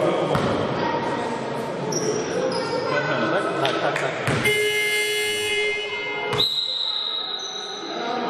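Basketball dribbled on a gym floor, then an electronic scoreboard buzzer sounds for about two seconds, starting and cutting off abruptly. A thin, steady high tone follows until the end.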